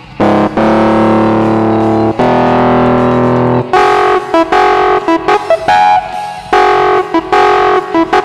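Hohner Pianet electric piano through a fuzz, its distorted, guitar-like tone holding chords, then from about halfway playing short repeated chord stabs. The original band recording sits faintly underneath.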